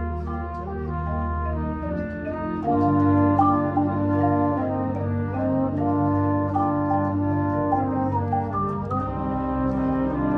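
School concert band playing, brass to the fore, holding sustained chords that change every second or so and swell louder about three seconds in.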